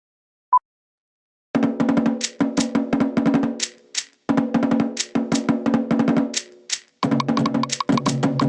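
A short electronic countdown beep, then fast Tahitian 'ori drumming starts about a second and a half in: rapid, even strokes on wooden slit drums (to'ere) in phrases with brief lulls, and a deeper drum joins near the end.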